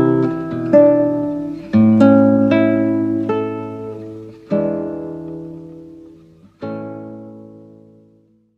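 Solo acoustic guitar playing a slow closing phrase: plucked notes and chords struck one by one, each left to ring and die away, more widely spaced towards the end, with a last chord fading out.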